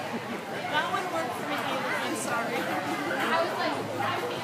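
Background chatter of several people talking at once, with no clear words.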